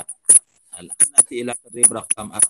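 Several short, sharp clicks, about four in two seconds, between brief fragments of speech.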